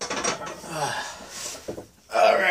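A man breathing hard after a set of bench press, in heavy voiced exhalations, with a short knock near the end.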